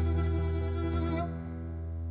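Cretan string band of lyra, mandolin and laouto with bass guitar holding the final chord of a syrtos, which dies away a little past a second in, leaving a low note ringing on.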